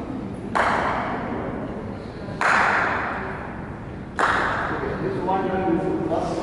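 Three cricket bat strikes on a ball, a little under two seconds apart, each a sharp crack that rings on in a large hall.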